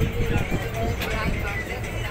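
Rumble of a passenger train coach running on the track, with a sharp click about a second in, heard from the open doorway. Faint voices are mixed in.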